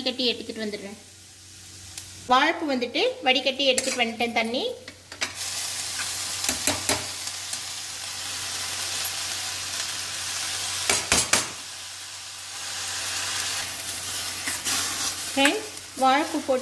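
Chopped banana flower tipped into hot oil in a steel kadai, sizzling loudly from about five seconds in, with a few sharp metal clinks against the pan. Before the sizzle there is a wavering pitched sound.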